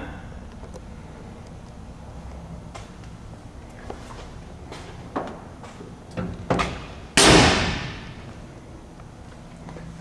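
A loud slam a little after seven seconds in, dying away over about a second, after a few faint knocks, over a steady low hum.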